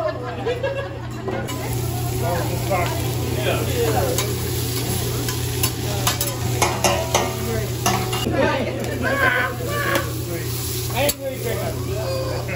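Vegetables sizzling on a hot steel teppanyaki griddle, with the chef's metal spatulas clicking and scraping against the griddle top. The hiss comes in about a second and a half in, with faint voices underneath.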